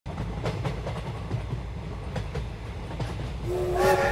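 Train sound effect: a low rumble with irregular clacks of wheels over rail joints, then a train whistle that starts about three and a half seconds in and grows louder.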